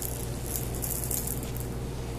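Kittens playing with a feathered wand toy: a short burst of rattling and rustling about half a second in, lasting under a second, over a steady low hum.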